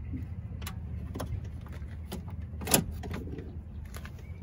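Plastic interior door handle assembly being pushed into place in a pickup's steel inner door: a few light clicks and knocks as it seats, the sharpest a little under three seconds in, over a steady low rumble.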